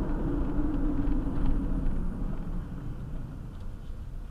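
Road and engine noise inside a Ford Transit van's cabin while driving: a steady low rumble that grows gradually quieter as the van slows.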